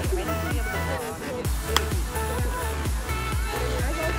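Background electronic dance-style music with a steady bass beat. A single sharp crack cuts through about halfway in.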